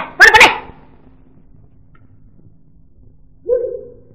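A woman's shouted, angry words cut off in the first half-second over the hum of an old film soundtrack, then near the end a single short dog bark.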